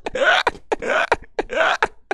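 A man's wheezing, breathy laughter in quick gasping bursts, about five in two seconds.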